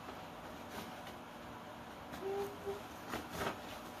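Paper and a cardboard box being handled: a few soft rustles and taps as a taped sheet of paper is pressed onto the side of the box. A brief faint tone sounds about halfway through.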